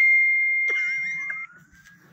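Electronic tone from the live-streaming app: a steady high beep that starts suddenly and fades out over about a second and a half, with a warbling electronic sound over its second half.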